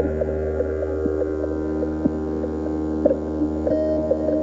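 Ambient electronic synthesizer drone: a deep steady hum under several held higher tones, with soft clicks about once a second.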